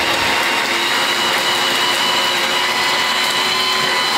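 Electric hand blender with a chopper-bowl attachment running continuously, blitzing fresh turmeric root and salt: a steady motor whine over a grinding rush.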